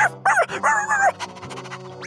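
Cartoon dog barking three times in quick succession, the last bark longer, over background music.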